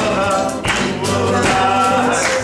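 A man singing a slow melody to his own acoustic guitar, with a few voices of the congregation singing along.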